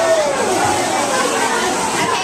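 Overlapping voices of a small gathering, with no clear words; a high-pitched voice slides downward right at the start.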